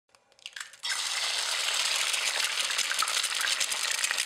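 Hot oil sizzling and crackling, as in frying, starting abruptly about a second in after a few faint crackles and running on steadily.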